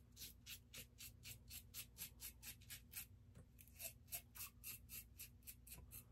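American Liberty CNC stainless steel safety razor scraping through lathered stubble in short, quick strokes, about four a second, with a brief pause a little past halfway. Faint.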